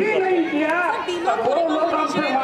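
Speech: several voices talking at once, steady and loud.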